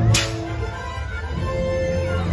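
Parade music playing over the float's speakers, with held notes and a single sharp crack right at the start.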